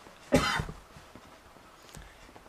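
A single short cough close to the microphone, about a third of a second in.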